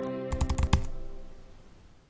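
Logo sting of an outro jingle: held chime-like tones dying away, with a quick run of about six sharp clicks about half a second in, then fading out.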